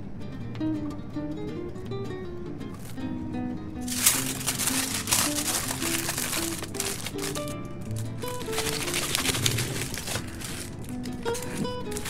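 Plucked-guitar background music throughout, joined about four seconds in by the dense crackling of aluminium foil being folded and crumpled around a sandwich, which dies away shortly before the end.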